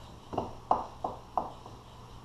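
A spatula knocking four times against a ceramic bowl, about three knocks a second, as it cuts vinegar seasoning into cooked sushi rice.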